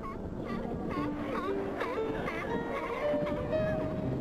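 A hauled-out group of California sea lions barking repeatedly, a few calls a second, over background music with sustained notes.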